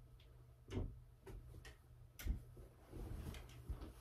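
A few soft thumps and knocks, about a second in, past two seconds, and twice near the end, with light rustling in between, as things are moved about on a bed.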